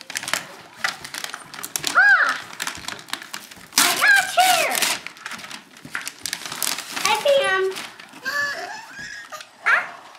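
Wrapping paper tearing and crinkling as a gift box is unwrapped by hand, with children's high-pitched squeals and excited voices over it, loudest about two and four seconds in.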